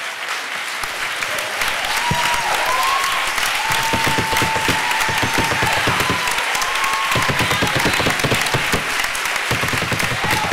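Large audience applauding, the clapping swelling over the first couple of seconds and then holding steady, with a few voices calling out over it.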